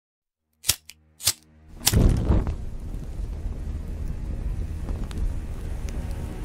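Cinematic logo-intro sound effects: three sharp cracks in quick succession, then a heavy boom about two seconds in that settles into a steady deep rumble with faint crackles.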